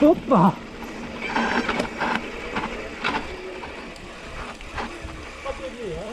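Mountain bike rolling down a dirt trail: the freewheel hub ticking while coasting, with the chain and frame rattling over the ground. A voice calls out briefly at the start, the loudest sound.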